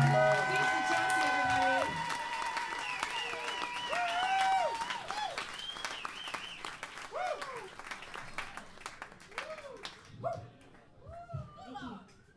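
The last held note of a live song ends about two seconds in, then a small audience claps and cheers with whoops. The applause thins out toward the end, where a few voices remain.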